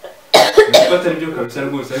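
A person coughs sharply about a third of a second in, and talking follows.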